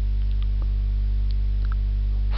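Steady low electrical mains hum with its overtones, unchanging throughout.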